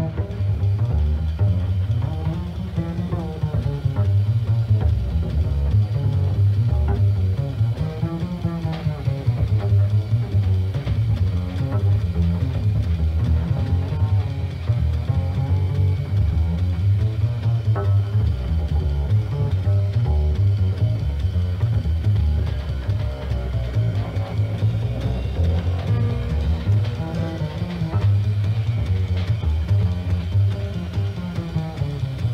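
Live small-group jazz with a plucked upright double bass out front, moving low lines and phrases up into its higher register, over drum kit with cymbals.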